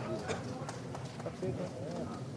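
Low murmur of voices across a ceremonial gathering, with a few light taps or knocks.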